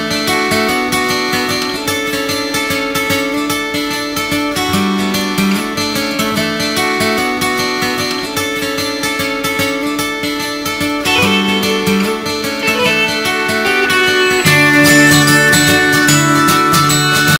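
Background music with a strummed guitar at a steady pace, growing fuller and louder near the end.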